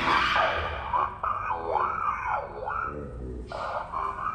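A person's voice wailing or screaming, starting suddenly and loudly, its pitch swooping up and down several times.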